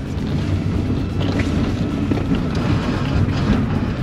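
Old Suzuki Swift hatchback's engine running as the car is driven around a tight cone course, a steady low drone.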